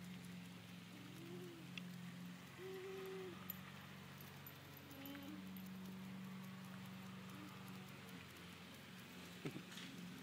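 Faint, low, steady hum under quiet outdoor ambience.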